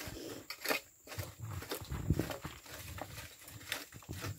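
Loose oil palm fruitlets being scraped up off the soil with a hand rake and scooped into plastic baskets: irregular scrapes and knocks.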